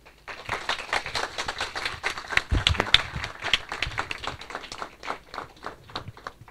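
A small audience applauding at the end of a talk. The claps thicken in the middle and thin out toward the end.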